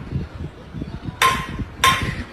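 A pistol being dragged and knocked across a concrete floor by a rat, with a rattle of small scrapes and knocks. Two sharper metallic clanks come about a second in and near the end.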